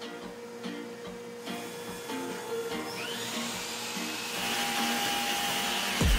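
A power tool's motor in a woodworking shop spins up about halfway through and runs steadily with a high whine and hiss, over soft background music.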